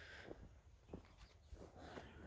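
Near silence: a faint low outdoor rumble with a few soft ticks.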